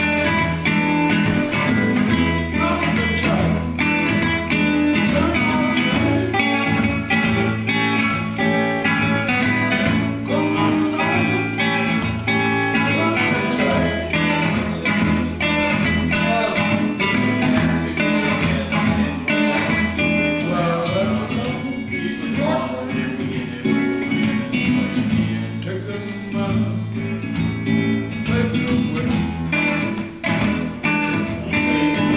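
Acoustic steel-string guitar played with a steady blues rhythm, with a man singing over it in a rough, unamplified voice.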